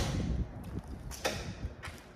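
A light aircraft's cold piston engine being turned over by hand through its propeller: a sharp click at the start and another knock a little over a second in, over low rumbling handling noise. The engine is being pulled through to get its mechanical oil pump circulating oil before a cold-weather start.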